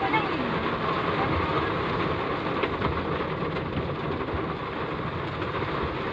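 Heavy rain on a moving car, heard from inside the cabin: a steady, dense hiss of rain hitting the roof and windshield, mixed with wet road noise.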